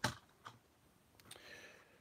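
Faint handling sounds of plastic toy packaging and parts: a couple of short clicks, then a soft rustle about a second and a half in.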